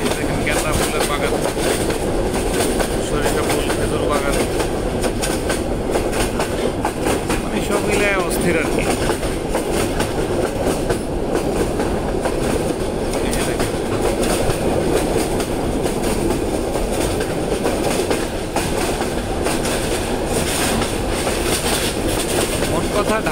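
A train running steadily, its continuous rumble heard from on board.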